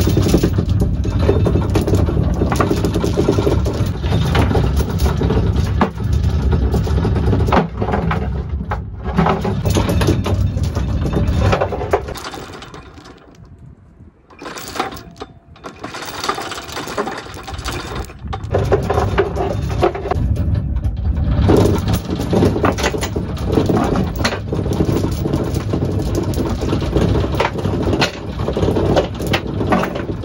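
Sea Tiger anchor windlass motor running as it hauls anchor chain up out of the chain locker, the links rattling as they are pulled through. It stops for a few seconds about twelve seconds in, then runs again. The windlass still works after sitting.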